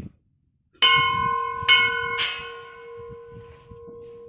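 Brass temple bell hanging in the doorway, struck three times: once nearly a second in, then twice in quick succession. Its tone rings on and slowly fades.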